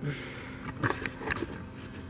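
Handling noise: a few soft knocks and rustles about a second in, over a low steady room background, as the camera is moved.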